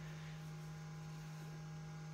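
Faint, steady electrical hum, with nothing else going on.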